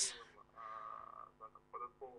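A speaker's drawn-out, low hesitation sound, a held "uhh", in a pause between sentences, followed by one or two short half-voiced syllables.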